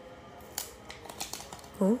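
Small clicks and taps of a plastic earphone case being handled, several in the second second. Near the end a short voiced "mm-hmm" is the loudest sound.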